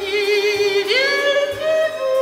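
A female singer holds a long note with vibrato, then glides up to a higher held note about a second in, over soft musical accompaniment.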